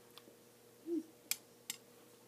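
A short closed-mouth "mm" just before the middle, then two sharp clicks about half a second apart, over a faint steady hum.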